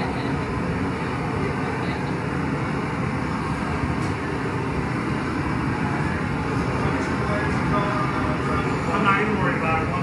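Hand-held gas torch burning steadily as its flame heats a glass piece on a blowpipe, a constant even rushing noise. Faint voices come in near the end.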